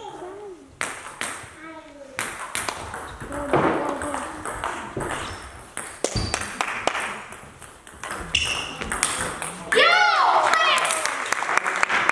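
Table tennis rally: the plastic ball clicks sharply off bats and table in quick succession. About ten seconds in, a loud shout from a player ends the point, and a louder noise follows.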